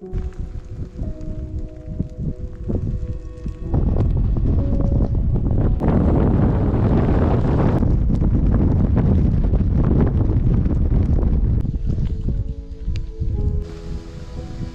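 Strong wind buffeting the microphone, a low rushing noise that grows much louder about four seconds in and eases near the end, over soft background music.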